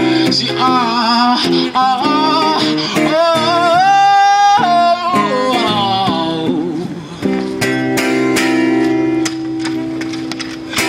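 Amplified acoustic guitar strummed under a male voice singing a run of sliding notes, with a long held note that rises about four seconds in. From about seven seconds the voice drops out and the guitar chords ring on alone.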